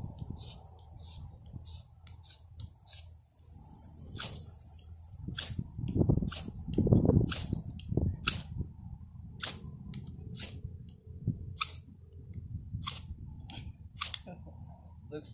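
A knife blade cutting and scraping dry palm wood into fine tinder, giving a string of short, sharp clicks and scrapes at irregular intervals. Underneath is a low rumble of wind on the microphone, loudest about six to seven seconds in.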